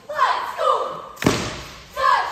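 Cheerleading squad shouting a cheer together in falling, drawn-out calls, with a single loud thump from a stomp about a second in.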